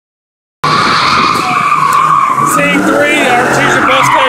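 Car tires squealing continuously as a Fox-body Ford Mustang spins a donut, starting about half a second in after a silent start. Voices shout over the squeal in the second half.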